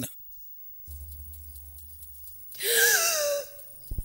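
A short, breathy wheeze with a falling pitch, about two and a half seconds in, after a faint low hum. A brief click comes near the end.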